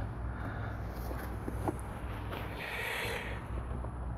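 Faint handling sounds of hands working among hoses and connectors in a car's engine bay, with a few light clicks, over a steady low background hum; the engine is off.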